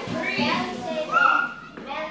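Young children's voices, high-pitched calls and chatter of children at play, with other voices in the room.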